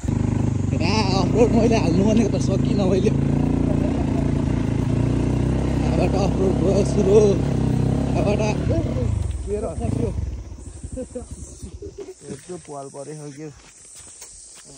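Small dirt bike's engine running at low, steady revs while it is ridden down a rocky trail, with voices over it; about ten seconds in, the engine sound falls away.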